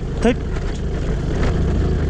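Motor scooter being ridden over a rocky dirt trail: a steady low rumble of the running scooter and the rough track, with a brief vocal sound about a quarter second in.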